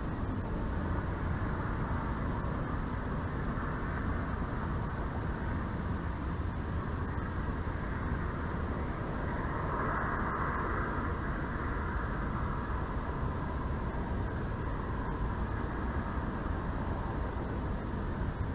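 Steady outdoor background rumble and hiss, swelling briefly about ten seconds in.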